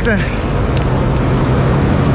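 A New Holland CX combine harvester's engine running at a steady idle, a constant low hum.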